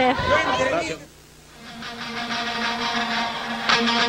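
Voices break off in a sudden cut about a second in; after a brief near-silent gap, background music fades in as one sustained, held chord that grows louder toward the end.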